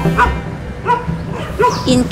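A dog barking three times, short sharp barks spaced well under a second apart, over low cello music that fades out early on.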